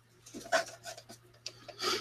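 Irregular rubbing and scratching strokes of a paintbrush worked across watercolor paper, the strongest about half a second in.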